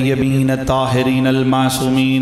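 A man chanting the Arabic opening blessings on the Prophet into a microphone, in long held melodic notes.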